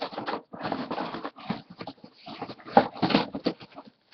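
Cardboard shipping box being torn and pulled open by hand, a run of irregular scraping and tearing noises.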